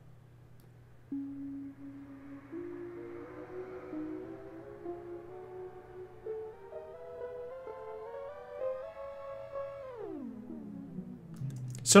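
A sustained synthesizer tone pitch-shifted by Ableton's Shifter effect, its coarse pitch control stepping it upward in semitone steps to about an octave higher, then sliding quickly down near the end.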